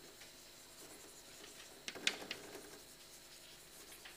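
Chalk writing on a blackboard: soft scratching strokes with short sharp taps as the chalk meets the board, the strongest two taps about two seconds in.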